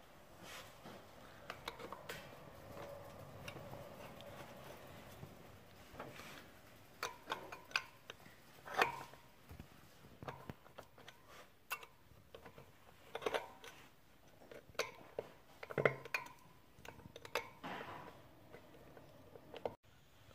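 Scattered light metallic clicks and taps, with a few louder knocks, as a tool pries the metal side cover off a Bafang 500 W e-bike hub motor.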